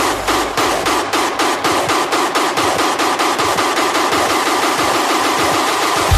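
Hardstyle track in a breakdown: the kick drum and bass drop out, leaving a fast, even pulse of buzzing mid-range synth. The bass comes back in right at the end.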